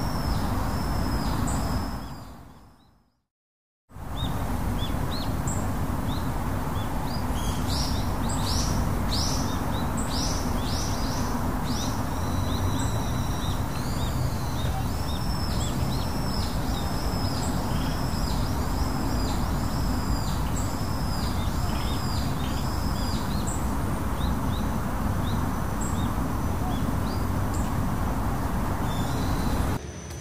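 Birds chirping, a string of repeated arched calls about twice a second through the middle stretch, over steady outdoor background noise. A few seconds in, the sound fades out to silence for about a second and then comes straight back.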